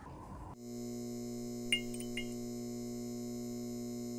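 Steady electrical hum of a neon-style sign sound effect, starting abruptly about half a second in, with two brief crackles of flicker near the middle.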